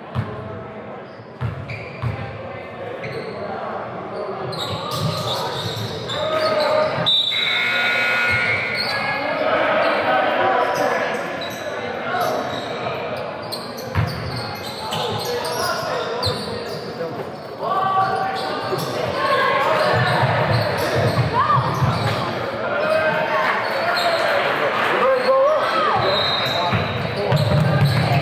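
Basketballs bouncing on a hardwood gym floor, with players' and spectators' voices echoing in a large hall.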